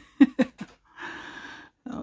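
A woman's soft laughter, three short chuckles, followed by a breathy exhale of just under a second.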